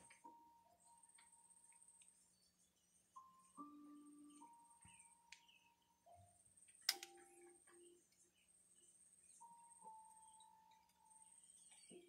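Near silence with faint music: held notes that step up and down in pitch, and one sharp click about seven seconds in.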